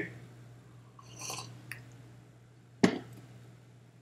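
A faint sip from a mug about a second in, then one sharp knock near three seconds in as the mug is set down on the desk, over quiet room tone.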